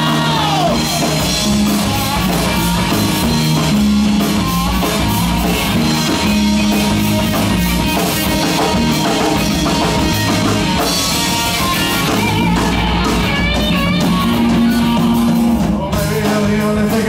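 Live rock band playing an instrumental passage: electric guitar lead lines over bass guitar and a drum kit.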